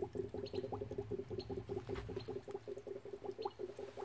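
Chlorine gas bubbling from a rubber tube into a beaker of phenolphthalein indicator solution: a faint, rapid, steady run of bubbles.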